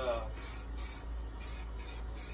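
Aerosol spray paint can spraying in several short hissing bursts, each about half a second long, with brief gaps between them.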